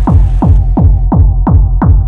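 Fast electronic dance music: a pounding kick drum about three beats a second, each beat dropping in pitch, over a steady deep bass drone. About half a second in the treble is filtered away, leaving only kick and bass.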